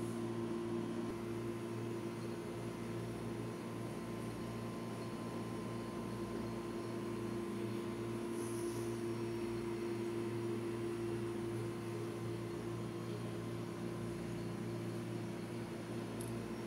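Steady low mechanical hum, even in level and pitch, with a faint short high-pitched blip about halfway through.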